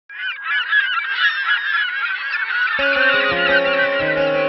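A dense chorus of many birds calling at once, starting suddenly out of silence. About three seconds in, guitar-led music comes in under the calls.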